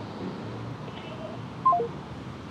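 Mobile phone giving a short electronic tone of three quick notes stepping down in pitch, about one and a half seconds in, with a fainter brief beep just before it.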